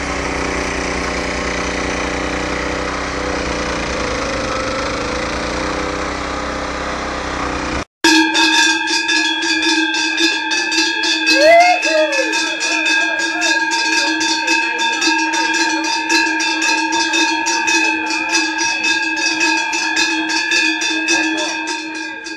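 Petrol snowblower engine running steadily while it throws snow. After a sudden cut about eight seconds in, cowbells ring on and on in rapid strokes, a mix of several bell tones.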